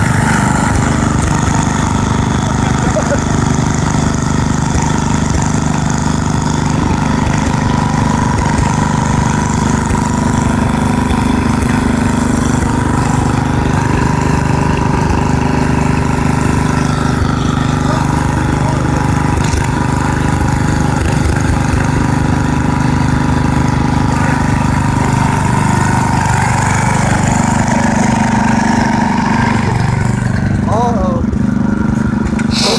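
Small engine of a stripped-down riding lawn mower running steadily at a constant speed.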